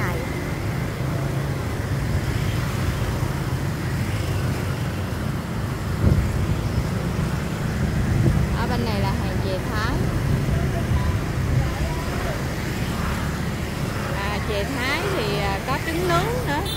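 Street traffic of motorbikes riding past, a steady low engine rumble, with a brief thump about six seconds in. Voices of people nearby come through now and then.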